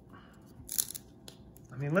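A stack of glossy trading cards being flipped through by hand, one card sliding off the stack with a brief papery swish a little under a second in, with a few faint clicks of card edges.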